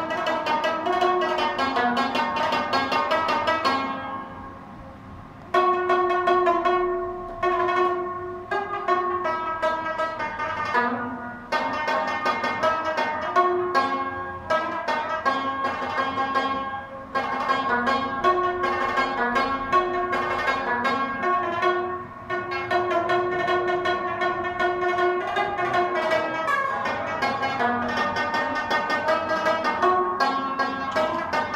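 Rabab played solo in fast runs of plucked notes, with a brief pause about four seconds in before the playing resumes.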